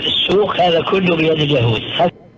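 A man speaking continuously on a narrow, thin-sounding old recording with the high end cut off.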